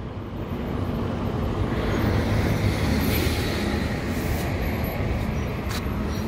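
City bus engine running with road traffic noise as an Ashok Leyland bus draws up to the stop; the rumble swells a couple of seconds in and then holds steady.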